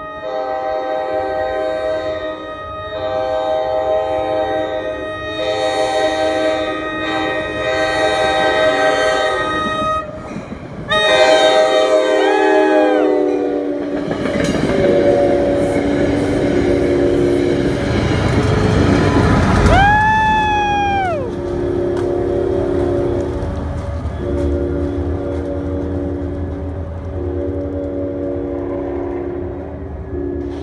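A commuter train's air horn sounds a series of long blasts as the express approaches at speed, then drops sharply in pitch about 20 seconds in as it passes. Meanwhile the loud rush and rumble of the train, Comet V coaches and a trailing PL42AC diesel locomotive, go by without stopping.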